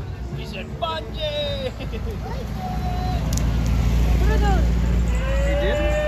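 A car engine rumbling low as a car in a slow procession comes up and passes close by, growing louder to its peak a little past the middle, with voices and calls over it.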